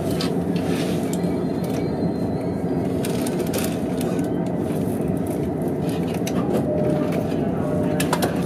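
Inside the passenger car of a JR E231-series commuter train as it comes to a stop at a platform and stands: steady cabin noise, indistinct passenger voices and scattered small knocks and clicks.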